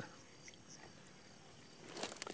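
Near silence: faint outdoor night background, with one soft tick about a quarter of the way in.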